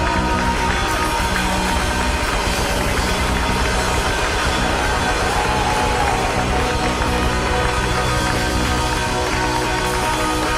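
Live pop-soul band playing, a steady, dense stretch of music at an even level.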